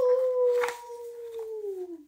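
A young woman's voice imitating a howl: one long, steady "oooo" held for about two seconds, sliding down in pitch near the end.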